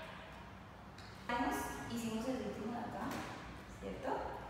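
A woman's voice, starting about a second in after a quiet opening and carrying on until near the end, with no clear words.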